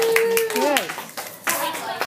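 A small group of students clapping by hand, with one voice holding a long call that drops in pitch about half a second in.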